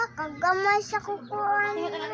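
A young child singing in a high voice, with a few long held notes in the second half.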